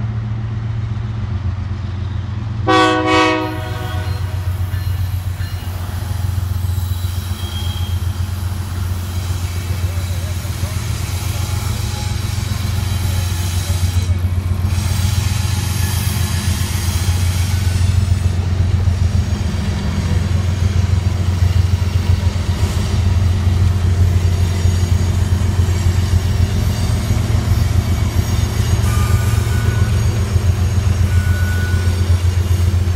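Diesel freight locomotive approaching and passing, its engine rumble steadily growing louder, with a short double toot of the horn about three seconds in. Near the end, freight cars roll by with wheel clatter on the rails.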